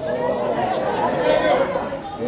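Several voices calling out and talking over one another at once: sideline voices at a football match during an attack on goal.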